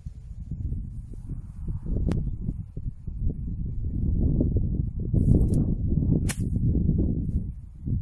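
Wind buffeting the microphone throughout. About six seconds in, a swish and then a sharp click as a sand wedge strikes a golf ball out of long grass. There is a single sharp tick about two seconds in.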